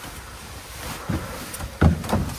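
Footsteps on a steep wooden staircase: two heavy steps about a second in and near the end, the second the loudest, over a steady rustling hiss.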